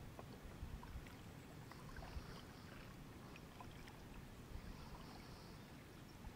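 Faint kayak paddling on calm water: paddle blades dipping, with scattered small drips and splashes as water runs off the blades.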